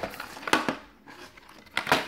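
Plastic DVD case being handled and opened by hand: a few short clicks and rustles, with a louder scrape and click near the end.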